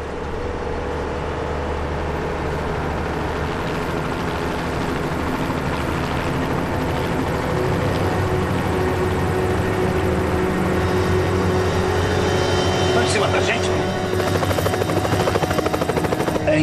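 Light helicopter's rotor beating rapidly and evenly, growing steadily louder as it approaches, the beat clearest near the end.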